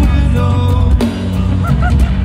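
Rock band playing live and loud, recorded from the crowd: drums, distorted electric guitars and bass. Two short, bent high notes sound near the end.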